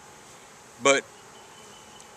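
Honeybees at the hive buzzing, a low steady hum.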